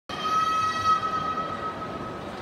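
A single sustained high ringing tone with overtones. It starts suddenly and fades away over about two seconds.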